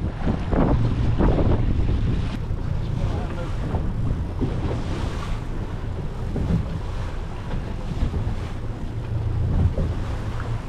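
A 150 hp outboard motor running under way, with wind buffeting the microphone and sea water washing past the hull.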